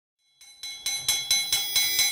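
A hanging metal ring used as a school bell, struck rapidly with a hammer about four times a second. The strikes start about half a second in and grow louder, each leaving a high, overlapping ring.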